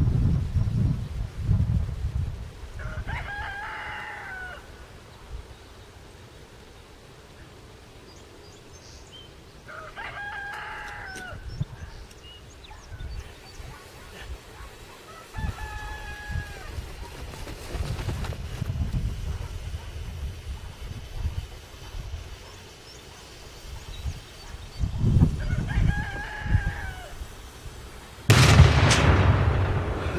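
A rooster crows three times, then near the end a single loud, sharp blast: an eight-gram charge of PETN detonating against a propane tank.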